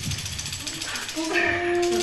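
Low murmur in the room, then a group of women start singing about a second in, holding a steady first note.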